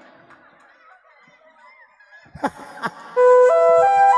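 Mostly quiet at first, then two quick downward-sliding honk-like sounds about two and a half seconds in. Near the end an electronic keyboard starts a loud flute-voiced melody of held notes stepping upward in pitch.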